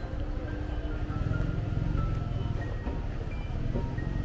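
City street ambience with music playing and short melody notes over a steady hum. A vehicle's low engine rumble swells about a second in and fades out again.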